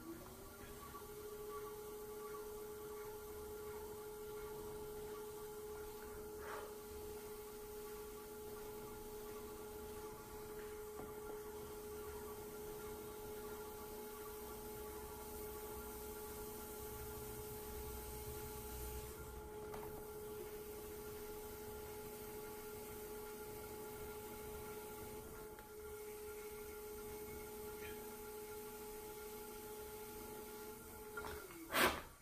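Electric pottery wheel motor running with a steady whine, rising in pitch in the first second as the wheel speeds up, then holding at a constant speed while a bowl is trimmed on it.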